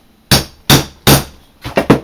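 A hammer striking a leather hole punch, driving it through the first layer of leather and marking the layer beneath, with the work resting on a wooden block. Three heavy blows come about 0.4 s apart, then a quick run of three more near the end.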